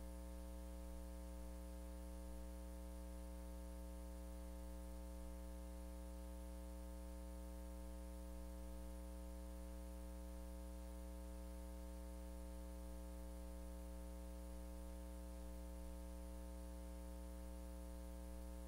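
Steady electrical mains hum with a faint buzz of overtones.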